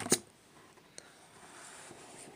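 A deck of trading cards handled on a tabletop: one sharp tap just after the start, a fainter click about a second in, and otherwise only faint handling.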